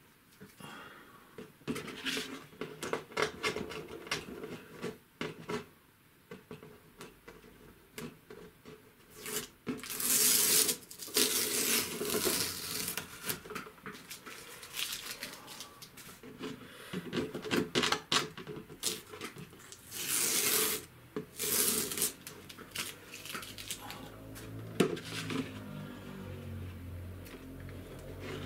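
Tape being peeled off painted paper, with the paper sheets handled and laid down on a wooden board: scattered clicks and taps, and a longer tearing rasp twice, about ten seconds in and again about twenty seconds in.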